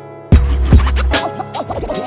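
Boom bap hip hop beat built on a sampled piano: the piano plays alone, then about a third of a second in the drums drop in with a heavy kick and snare. Turntable scratching with quick up-and-down pitch sweeps comes in over the top.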